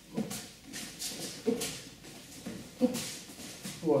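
Repeated short grunts of effort from a sambo wrestler, one or two a second, as he drills quick gripping throw entries on the mat, with jacket and foot noise.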